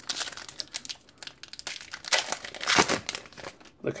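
Foil Pokémon booster pack wrapper crinkling and being torn open. It makes a run of small crackles, with a louder stretch of tearing between about two and three seconds in.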